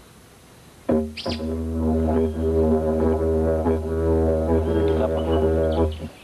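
Didgeridoo freshly made from a termite-hollowed bloodwood branch, played for a first trial: a steady low drone with rich overtones that shift slowly. It starts abruptly about a second in and stops near the end.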